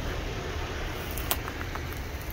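Steady outdoor background noise with a low rumble, broken by one sharp click a little past halfway and a few faint ticks after it.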